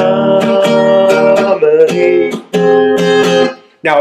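A man singing long held notes of a slow melody over strummed acoustic guitar chords. The music fades out just before the end.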